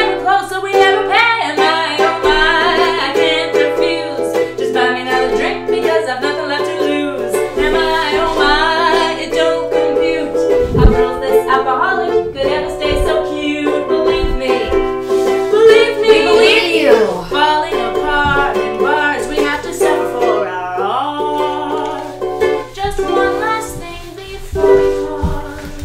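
A woman singing a jaunty song while strumming a ukulele. There is a single low thump about halfway through.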